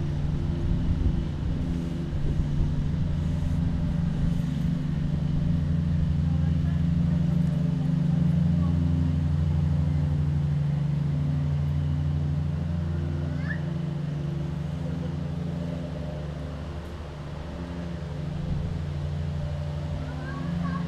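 A motor vehicle engine idling: a steady low drone that swells slightly toward the middle and eases off near the end.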